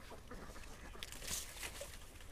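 Faint rustling of sorghum leaves and stalks being handled, with a brighter rustle a little past the middle.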